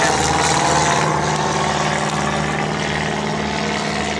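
Small single-engine propeller plane's piston engine and propeller droning steadily as it flies past and away, slowly fading.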